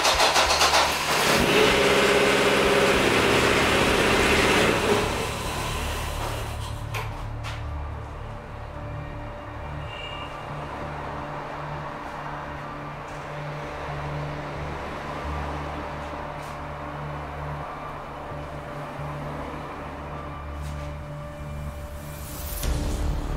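A Chevrolet 2.0 eight-valve four-cylinder engine in a Corsa runs loud and fast for the first five seconds or so, then settles into a steady idle. This is the run that is marked as the moment of the breakdown, before the engine seized.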